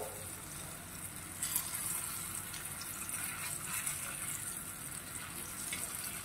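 Raw banana slices shallow-frying in oil in an iron tawa: a steady sizzle that grows slightly louder about a second and a half in.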